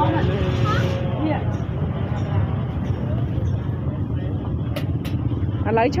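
Street market ambience: people talking, over a steady low rumble of motorbike traffic, with two sharp knocks about five seconds in.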